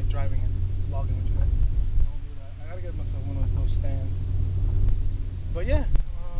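Steady low rumble of a car's engine and road noise heard from inside the cabin while driving, with short bursts of a man's voice over it.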